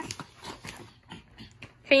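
Faint, scattered clicks and soft rustling of things being handled, in a quiet stretch between voices.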